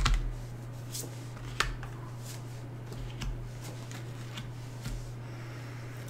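A deck of tarot cards being handled: scattered soft clicks and snaps of card stock, the strongest right at the start, then several fainter ones about a second apart, over a steady low hum.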